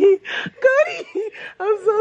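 A child's high-pitched voice giving short wordless cries that waver in pitch, then a long held cry near the end.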